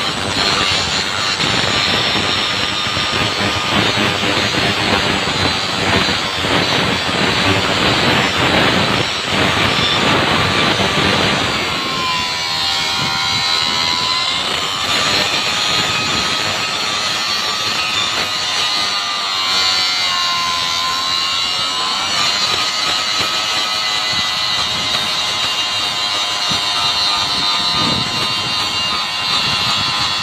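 Handheld angle grinder with an abrasive disc grinding steel off the chipped tongue rail of a railway switch, a steady grinding noise over the motor's whine. Twice, about midway, the whine sags in pitch and recovers. The chipped portion of the tongue rail is being ground smooth to prepare it for reconditioning.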